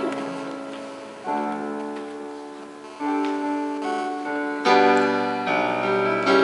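Digital stage piano playing a slow introduction: sustained chords struck about every second and a half, each fading before the next.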